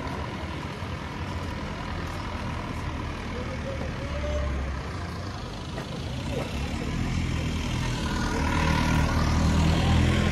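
Street ambience dominated by a motor vehicle's engine running close by, a low steady hum that grows louder over the last few seconds as the vehicle comes nearer.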